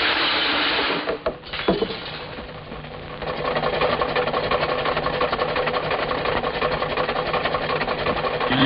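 An old truck's engine running with a fast, steady mechanical clatter, starting about three seconds in. It is preceded by a short loud hiss in the first second.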